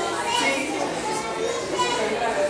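Mixed chatter of young children and adults talking over one another, with no one voice standing out.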